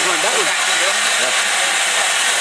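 Steady, loud hiss of steam escaping from a standing steam locomotive, with voices of a platform crowd over it.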